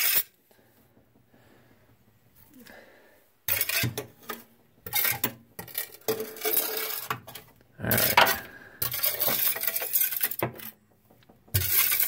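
Small metal sandbox shovel scraping across the glass floor of an aquarium and scooping up soil substrate, in a run of short rasping, clinking strokes that start about three and a half seconds in.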